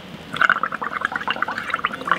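Air blown through a plastic drinking straw into a cup of soapy liquid paint (acrylic paint, dish soap, sugar and water), bubbling in a rapid, irregular gurgle that starts about a third of a second in.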